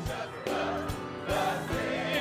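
Church choir singing a slow gospel hymn, the voices holding long notes with vibrato, over piano accompaniment with a steady beat.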